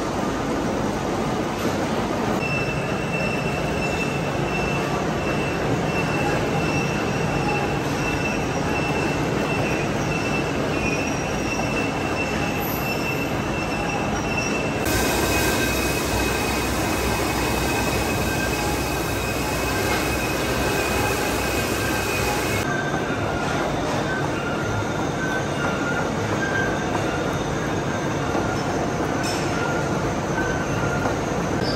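A vintage British vertical lathe's rotating multi-tooth cutter is cutting helical gear teeth into a steel blank. The metal-cutting noise is steady and grinding, with a thin high squeal running through most of it. Its character changes abruptly twice.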